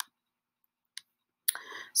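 Two sharp computer pointer-button clicks about a second apart, with near silence between, followed by an intake of breath just before speech begins near the end.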